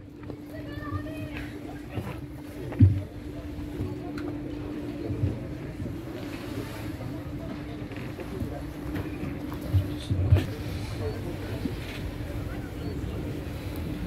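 Open-air gathering heard through a public-address system: a steady low hum, faint murmuring voices, and a few muffled thumps, the loudest about three seconds in.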